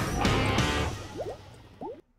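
Intro jingle music fading out over about a second, followed by a few short, rising bubbly blips near the end.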